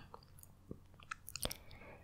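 Faint, scattered moist clicks and small smacks from the mouth, picked up by a close, sensitive microphone in a pause between whispered phrases.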